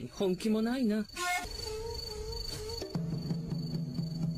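Anime soundtrack: a voice in the first second or so, then steady held tones of background music, over a continuous high chirping of crickets.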